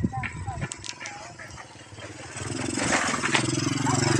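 A small motorcycle engine grows louder over the second half, its low note dipping slightly as it passes close by.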